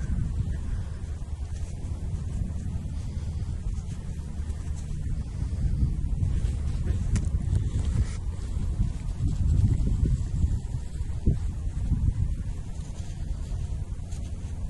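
Wind buffeting the microphone in a steady low rumble, with faint scratching as gloved fingers rub dirt off a small metal find.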